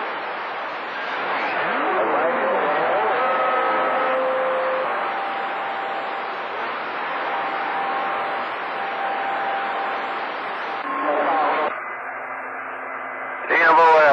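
CB radio receiver on channel 28 hissing with skip static between transmissions, crossed by faint whistles from other carriers. Some whistles glide in pitch about two seconds in, and steadier whistles follow. A brief garbled burst of voice comes through about eleven seconds in, then quieter static with a low hum.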